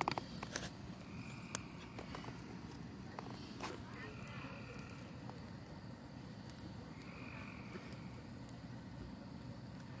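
Wood bonfire burning with a low steady hiss and a few scattered crackling pops from the logs.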